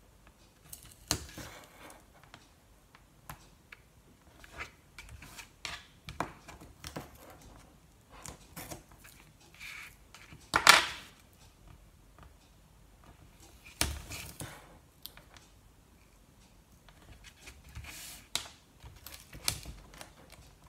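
Double-sided tear tape being pulled off its roll, torn by hand and pressed down in strips on cardstock: scattered short crackles and taps, with one louder rip about ten seconds in.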